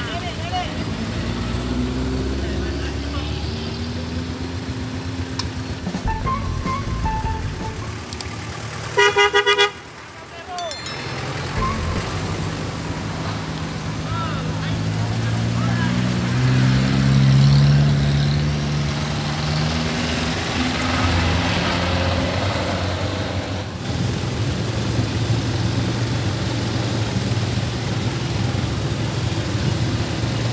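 Cars and motorbikes running slowly past at close range, their engines humming. A car horn honks loudly for about a second, a third of the way through.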